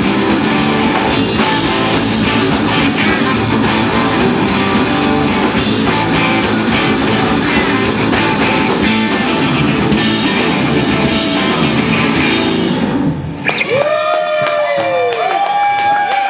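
Live noise-rock band playing loud, with distorted electric guitars, bass guitar and a drum kit. The song stops suddenly about thirteen seconds in, leaving a held tone that bends up and down in pitch.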